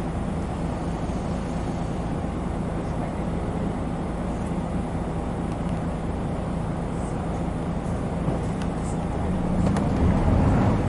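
A 1996 Hino Blue Ribbon city bus's diesel engine idling steadily, heard from inside the cabin, with the engine picking up near the end as the bus begins to pull away.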